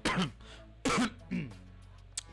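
A man coughing, two harsh coughs about a second apart, over quiet background music.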